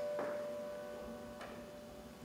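A piano chord fading away as it rings out, with two faint clicks: one just after it begins, one about a second and a half in.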